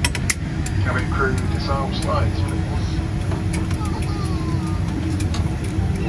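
Cabin noise inside a Boeing 787-8 after landing: a steady low rumble with passengers' voices talking in the background and scattered clicks and knocks.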